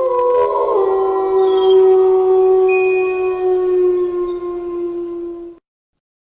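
A long, steady horn-like tone that slides up briefly at the start, holds one pitch, and cuts off suddenly near the end.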